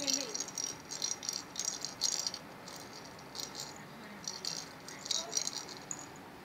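Rattle inside a hollow plastic cat-toy ball, jingling in several short bursts as a kitten bats and bites at it.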